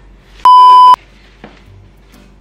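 A loud electronic bleep, one steady high tone held for about half a second, starting about half a second in and cutting off sharply. A faint paper rustle follows about a second later.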